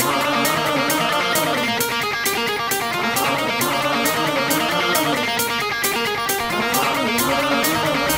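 Background music: electric guitar over a steady beat.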